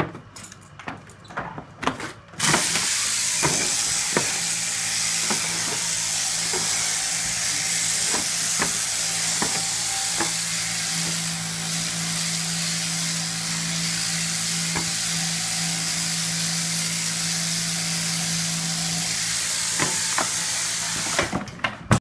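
Sheep-shearing handpiece on an overhead-drive shearing plant, running while a sheep is crutched (wool cut from around its tail and crotch): a steady buzzing hiss over a low hum, starting about two seconds in and cutting off just before the end. A few knocks come before it starts.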